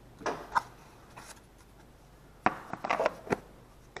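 Plastic air cleaner parts of a Honda GXV160 engine being handled and fitted together: two light knocks just after the start, then a quick run of clicks and knocks past the halfway mark as the cover is set down over the filter.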